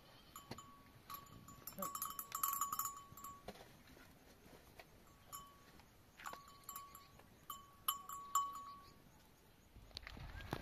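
Livestock bells clinking faintly and irregularly, the clinks coming thickest about two to three seconds in and again around eight seconds.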